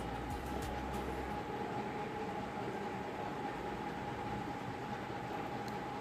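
Chopped onions sizzling in hot ghee in a steel pressure cooker, a steady hiss.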